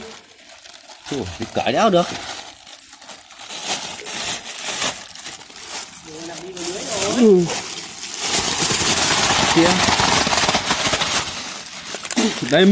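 Thin plastic carrier bag crinkling as it is handled: scattered crackles at first, then a loud, continuous crinkle for about three seconds near the end.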